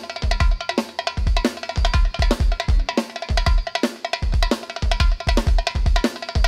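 Live Balkan Romani dance music from a wedding band: a fast, steady drum-kit beat with bass-drum hits and sharp percussion strokes under a pitched melody line.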